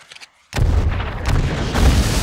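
A brief faint rustle, then about half a second in a sudden, loud barrage of explosions begins: several blasts in quick succession over a heavy, continuous low rumble.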